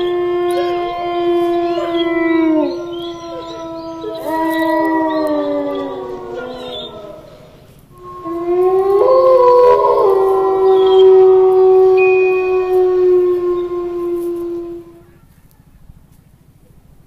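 Long, drawn-out canine howls, one held to about seven seconds in and another from about eight seconds to near the end, each holding a steady pitch and dropping as it trails off.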